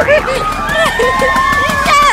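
A woman laughing, then a long high-pitched squeal held steady for about a second.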